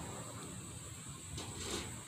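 Quiet outdoor background with a steady, high-pitched hum of insects.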